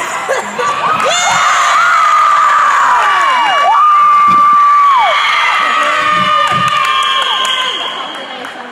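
Crowd cheering with long, shrill screams as the team wins a point in a volleyball match. The screams are loudest about four to five seconds in and ease near the end.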